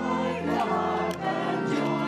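A choir singing held notes over instrumental accompaniment with a steady bass.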